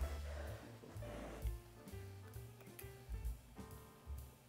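Quiet background music with steady low bass notes. In the first second there is a soft breathy rush of air blowing on a forkful of hot pasta to cool it.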